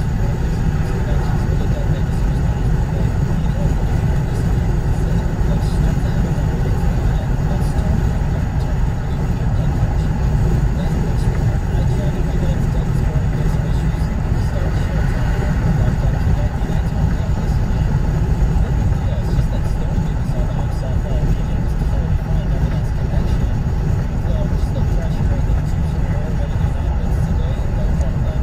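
Steady road and drivetrain noise heard inside a car's cabin at highway speed, a constant low rumble with tyre hiss. Indistinct voices sit low underneath it, too muffled to make out.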